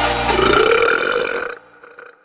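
Bagpipe intro music, joined about a third of a second in by a long, loud burp. Both cut off about one and a half seconds in, leaving a faint fading tail.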